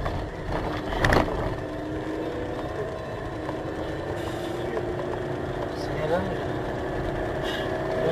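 Car engine heard from inside the cabin, held at high revs in a low gear with its note slowly rising: the learner driver has not shifted up. One sharp click comes about a second in.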